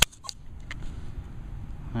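Handling noise as the camera is swung over the grass: a sharp click at the start, then a few faint ticks and rustles over a low steady background. No metal-detector tone sounds yet.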